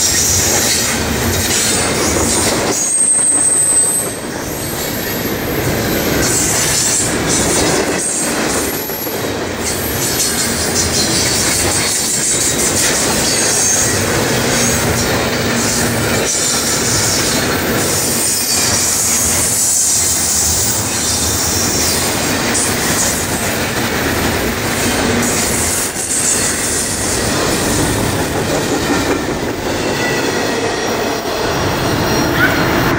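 Double-stack intermodal container freight train passing close by: steel wheels running loudly on the rails with high-pitched wheel squeal and some clickety-clack over the rail joints.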